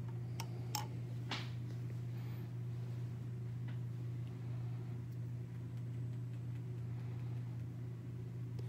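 A glass test tube clinks lightly against the glass beaker a few times as it settles into the hot-water bath, with the clinks coming in the first second and a half. After that there is only a steady low hum.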